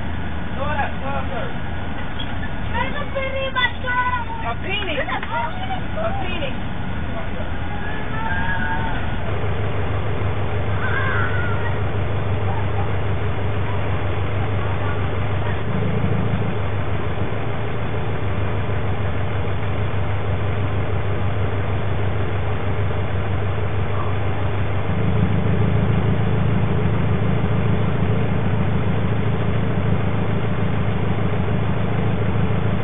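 High-pitched children's voices calling and chattering for about the first nine seconds, then a steady low hum, like a vehicle idling, that gets a little louder near the end.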